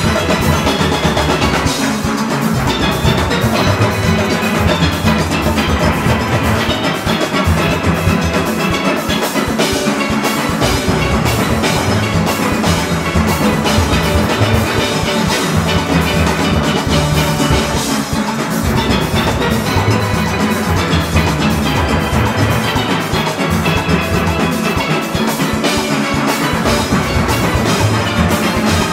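A full steel orchestra playing a Panorama arrangement at performance tempo: massed steel pans struck with rubber-tipped sticks over a drum kit, cymbals and congas, loud and continuous.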